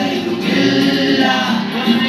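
A Malayalam film song playing through a cinema's sound system: choir-style voices singing held notes over the backing music.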